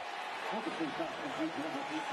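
Commentators talking quietly and chuckling over a steady stadium crowd background.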